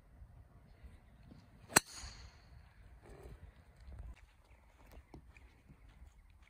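A golf driver striking a ball off the tee: one sharp crack with a brief metallic ring, a little under two seconds in.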